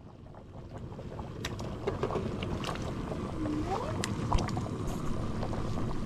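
A steady low rumble fades in and grows louder, with scattered light metallic clinks as a steel bowl is handled and food is scraped from it into a cooking pot. A short rising whine sounds a little past halfway.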